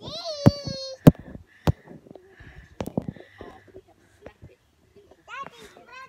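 A high whining cry that falls in pitch over the first second, then a few sharp knocks in the next two seconds, and another short rising cry near the end.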